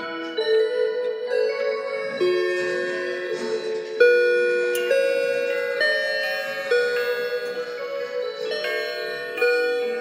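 Several clocks of a collection chiming and playing melodies together as they strike noon: overlapping ringing bell and rod tones with struck notes among them, the loudest about four seconds in.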